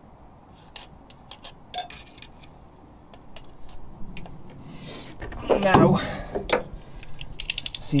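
Snap-off utility knife blade being slid out, a quick run of ratcheting clicks near the end. A louder scraping clatter comes a couple of seconds before, with faint scattered clicks earlier on.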